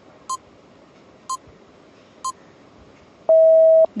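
Quiz countdown timer sound effect: three short electronic beeps a second apart, then a longer, lower and louder steady tone as the countdown runs out.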